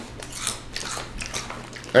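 Close-miked chewing of crunchy potato chips, with light, irregular crunches.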